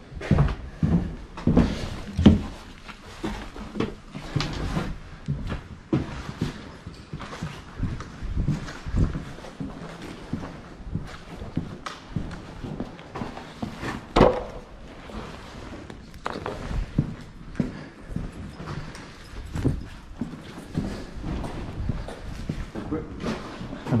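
Footsteps at a walking pace on a hard floor, with knocks and rattles from carried gear and indistinct voices; one louder knock about halfway through.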